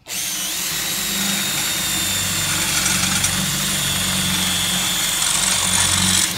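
Makita 18 V cordless drill boring a hole through iron sheet plate, running steadily under load with a thin high whine over its motor hum.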